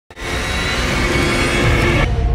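TV channel's opening ident music: a dense, loud sting with heavy bass, beginning abruptly just after the start.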